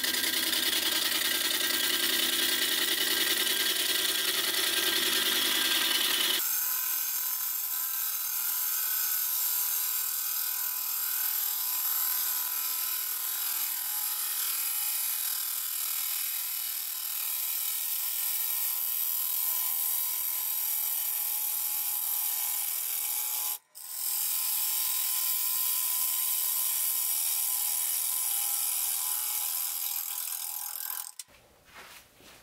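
Wood lathe spinning a large oak crotch blank while a gouge cuts into it: a steady hissing cut over the machine's running noise. The lower part of the sound drops away about six seconds in, and there is a brief break about three-quarters of the way through.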